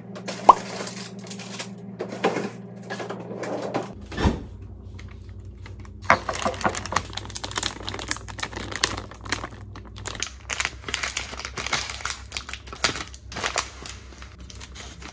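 Plastic food packaging crinkling and tearing as it is cut open with kitchen scissors and pulled apart, in quick dense crackles and snips through the second half.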